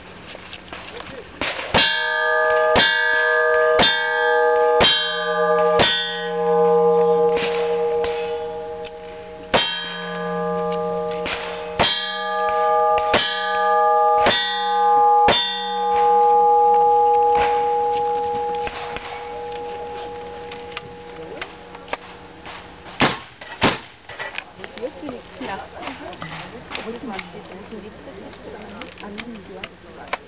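Revolver shots at about one a second, in two strings of about five, each answered by the clang of a hit steel target. The plates keep ringing in clear tones that linger several seconds past the last hit. Two more shots follow in quick succession near the end.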